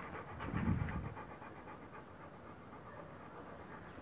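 Rottweiler panting steadily with its mouth open, in quick even breaths. A brief low rumble comes about half a second in.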